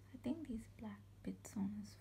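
A woman speaking quietly in short phrases, close to the microphone.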